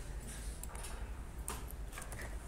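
A few faint clicks from editing code at a computer, over a low steady hum.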